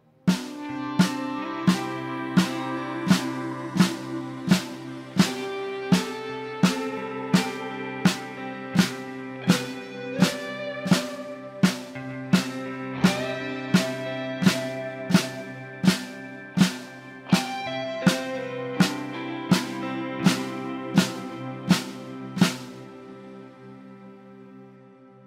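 Snare drum struck with wooden sticks at a steady beat, about one stroke every 0.7 s, playing the exercise of four quarter notes followed by four flams, alternating the leading hand. Sustained backing-track chords run underneath. The strokes stop about a second and a half before the end while the chords fade.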